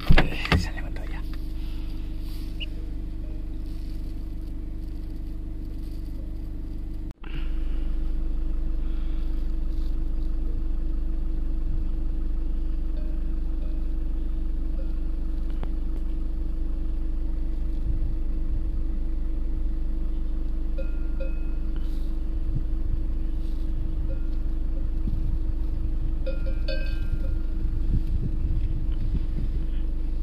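Steady low rumble of a vehicle engine running. Near the end, cowbells clink a few times.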